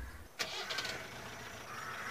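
A car engine starts with a sudden catch about half a second in, then settles into a steady idle.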